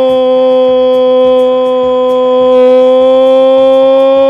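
A radio football commentator's goal cry, a drawn-out 'gooool' held loud on one steady pitch.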